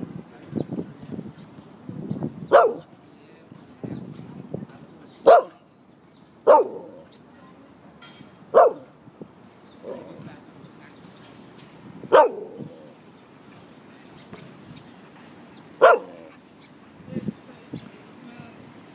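A dog barking in single short, sharp barks, six times at irregular intervals a few seconds apart.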